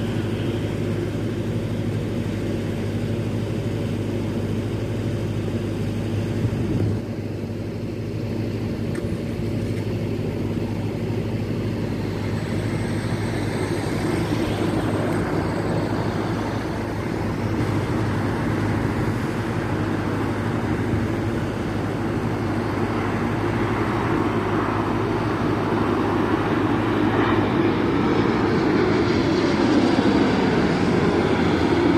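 Boeing 787 jet airliner on final approach, its engine noise growing steadily louder as it comes in low overhead near the end, over a constant low hum of road traffic.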